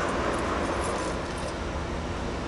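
Steady outdoor background noise with a low rumble and no distinct event.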